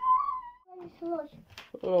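A short, high, slightly wavering whistled note lasting about half a second, followed by faint voices.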